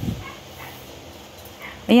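A brief low thump right at the start, followed about two seconds later by a woman's voice.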